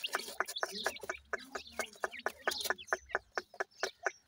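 Grey francolin chicks feeding and calling, a rapid, irregular run of short sharp clucks and pecks, several a second, with a few brief chirps.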